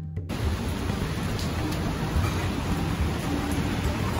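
Background music stops abruptly just after the start. It gives way to a steady, even hiss of rain falling on a wet street, with a low rumble underneath.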